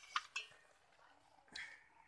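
Stainless steel kitchenware clinking: two quick metallic clinks with a brief ring, then another about a second and a half in.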